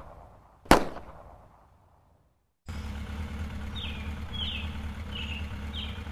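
A single gunshot about a second in, its crack fading out over a second or so. After a moment of silence comes a steady low hum, with a few short, falling bird chirps over it.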